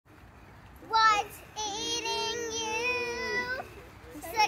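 A child's high voice: a short call about a second in, then one long sung note held for about two seconds with a slight waver.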